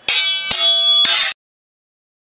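Metal bell clanging, struck three times in quick succession with a ringing tone, then cut off abruptly.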